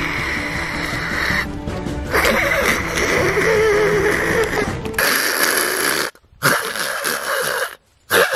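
Background music for the first few seconds, then a man's voice making breathy hissing imitations of an opossum's territorial sounds, broken by two short pauses.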